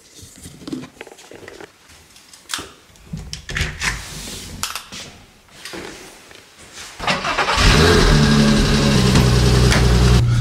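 Scattered handling clicks and knocks, then about seven and a half seconds in a car engine starts and settles into a loud, steady idle.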